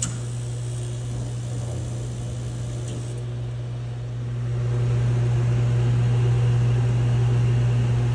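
Mr. Heater Big Maxx MHU50 gas unit heater running during a call for heat, its blower giving a steady low hum. The hum grows louder about four and a half seconds in.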